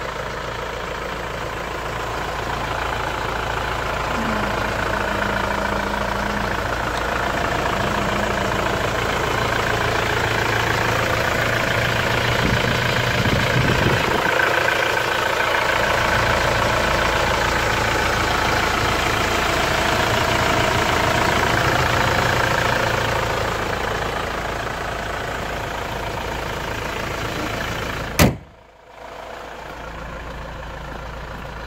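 2003 Kia Sorento's engine idling steadily, heard from the open engine bay, growing louder as the microphone nears it. A sharp click near the end, after which the sound briefly drops away.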